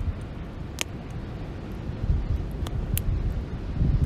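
Wind buffeting the microphone in a low rumble, with a few sharp pops from a wood campfire burning under a grill, the loudest about a second in and two more near the end.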